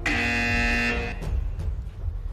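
A single buzzer-like horn blast, about a second long, on one steady buzzy pitch.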